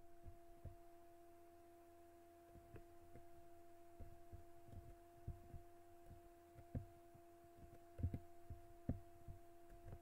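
Faint, irregular keystrokes and clicks on a computer keyboard, scattered short knocks with longer gaps between them, over a steady low hum.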